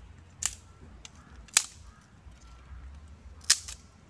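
Thin dry sticks snapped by hand: three sharp cracks, one about half a second in, one a second later, and one near the end.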